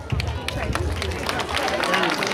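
Scattered audience applause with crowd chatter as a pupil's name is called to the stage.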